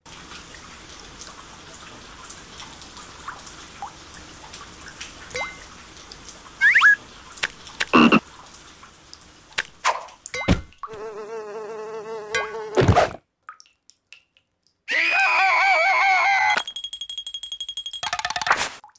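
Cartoon soundtrack: a steady hiss of rain, then a few sharp sound-effect hits, and two spells of wavering, warbling cartoon creature voices, the second louder, ending in a steady high buzzing tone.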